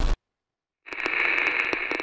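Logo-intro sound effect: a brief burst right at the start, then after a short gap a crackling, static-like hiss with scattered clicks that comes in about a second in and begins to fade near the end.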